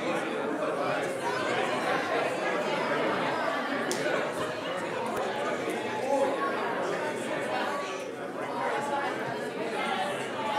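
Congregation greeting one another: many overlapping conversations at once, a steady hubbub of chatter.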